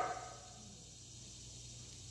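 A pause in a man's speech: faint room tone with a steady low hum, the echo of his last word fading out within the first half second.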